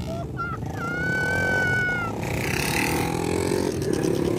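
Several small street motorcycles running at once, their engines making a dense, steady noise. About a second in, a single high held tone sounds for about a second, falling slightly in pitch.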